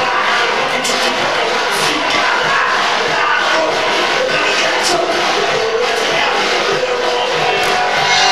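Live rock band playing loud and steady: electric guitars and a drum kit, with cymbal hits standing out several times.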